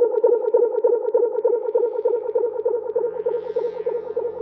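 Psytrance intro: a fast-pulsing synthesizer tone, about eight pulses a second, with a low bass line coming in about a second in and growing stronger near the end, where a rising sweep builds.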